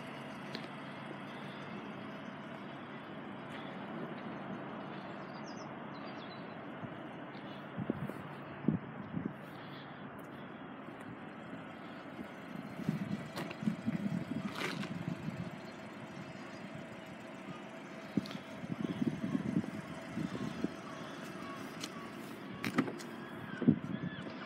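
Steady outdoor background hum with a faint constant tone, broken by spells of low rustling and knocking from the phone being handled and walked around. A couple of sharp clicks near the end, as a car's rear door is unlatched and opened.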